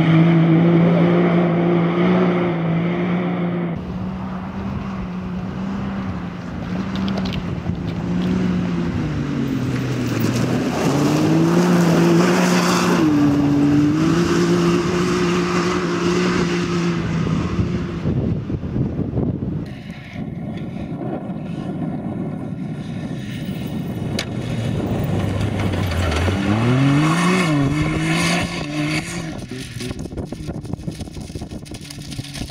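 Can-Am Maverick X3 side-by-side's engine running hard, its pitch holding steady, then dipping and climbing again several times as it drives off. Near the end the note drops low and then rises quickly as it accelerates.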